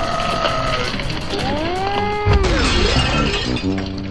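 Cartoon sound effects over music: a wailing, voice-like cry that rises and falls in pitch, then a sudden crash about two seconds in, followed by tones sliding down.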